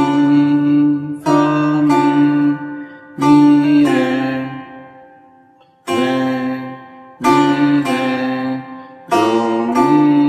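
Setar playing single plucked notes on its first string, each note struck sharply and left to ring and fade before the next.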